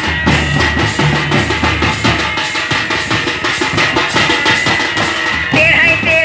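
Several two-headed barrel drums played by hand in a fast, dense folk dance rhythm, with deep drum strokes strongest in the first half and a high steady tone above them. Near the end a wavering melody line comes in over the drums.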